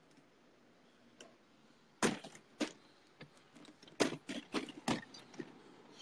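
Window hardware being worked shut: after a quiet pause, a quick run of about eight sharp clicks and knocks of latches and frames.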